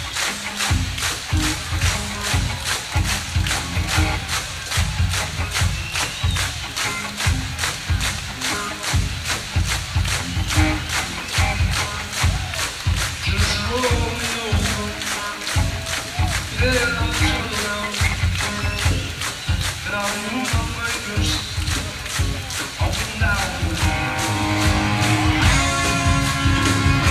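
Live rock band playing an instrumental passage, with drums keeping a steady, driving beat under electric guitar lines. Near the end the guitars move to held chords.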